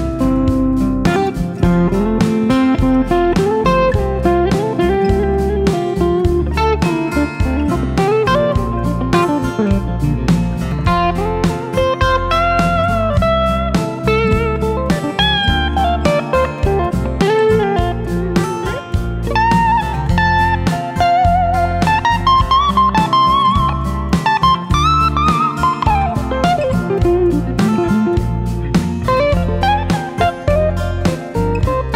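Instrumental guitar break: an electric guitar (Fender Stratocaster) plays a lead solo with notes bent up and down, over a capoed acoustic guitar playing the chords.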